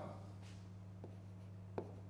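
Faint stylus strokes on an interactive touchscreen board as a symbol is written, with one short click near the end, over a steady low hum.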